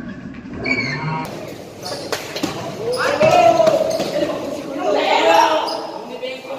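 A basketball bouncing on an indoor court, with sharp thuds about one and two seconds in, followed by loud shouts from players about three seconds in and again about five seconds in, echoing in a large gym hall.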